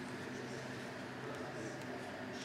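Indistinct voices murmuring in a large, echoing sports hall, with a few faint clicks.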